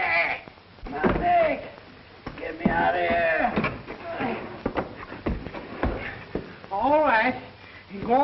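A man's wordless groans and grunts in several short wavering bursts, with a few sharp knocks in between.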